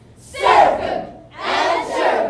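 A speech choir of many voices calling out together in unison: two loud group calls, the first a little way in and the second about a second later.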